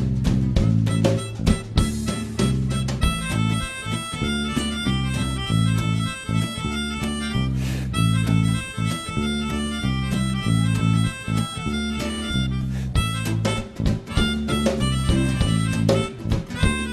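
Live band music: a free-reed wind instrument plays the lead melody over acoustic guitar, electric bass and a drum kit.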